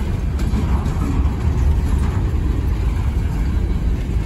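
Empty coal hopper cars of a freight train rolling past close by: a steady low rumble of steel wheels on rail.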